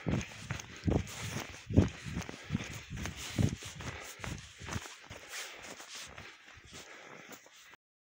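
Footsteps crunching in snow, a regular step about every 0.8 s, with a husky's paws padding alongside; the steps fade out about five seconds in, leaving only faint rustling.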